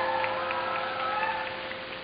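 A live concert audience cheering and applauding, with whoops, as a held note from the band fades away.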